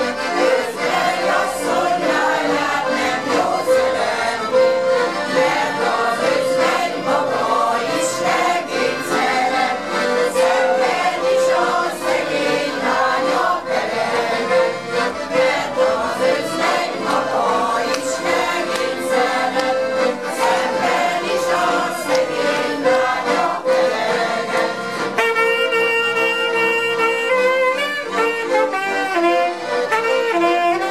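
A choir singing a Hungarian nóta with two piano accordions accompanying. About 25 seconds in, the voices give way to an instrumental passage of long held notes.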